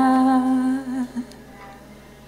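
A singer's long held closing note, with a slight waver, fading out about a second in as the song ends. After it only a faint background remains.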